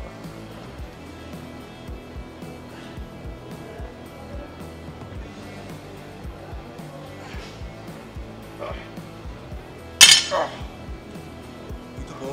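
Background music with a steady beat; about ten seconds in, one loud metallic clank with a short ring, as the loaded barbell is set down at the end of a set of stiff-leg deadlifts.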